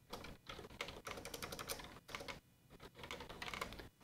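Typing on a computer keyboard: a run of quick, faint key clicks, with a short pause about two and a half seconds in.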